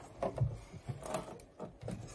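Soft, irregular clicks and knocks of work being handled at a sewing machine, with no steady stitching rhythm.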